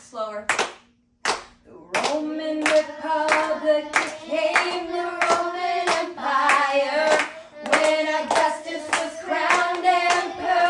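A teacher and children singing a memory-work song together, clapping a steady beat of about two to three claps a second. Singing and clapping start about two seconds in, after a brief silent pause.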